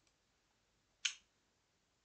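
A single short, sharp click about a second in, over otherwise quiet room tone.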